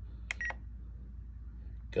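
Spektrum NX10 radio transmitter giving two quick short beeps, about a fifth of a second apart, as its scroll roller is clicked to select a menu item.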